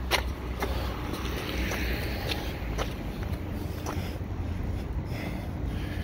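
City street ambience heard while walking: a steady low rumble of traffic, with scattered light clicks.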